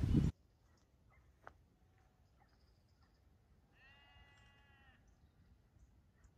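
A single faint sheep bleat, about a second long, some four seconds in, against near silence, with a small click shortly before it.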